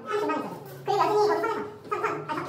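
Indistinct women's voices talking over a steady low hum, with a short lull just under a second in.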